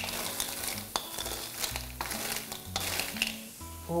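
Wooden spatula stirring blood cockles in a steel wok, the shells clattering against the pan and each other in several sharp clicks over a light sizzle as they cook dry in their own juice.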